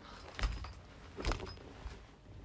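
A Louis Vuitton monogram-canvas bag being handled and lifted off its cloth dust bag: short rustles and knocks with a light clink of its metal hardware. The biggest comes about half a second in, another just over a second in, and a small one near the end.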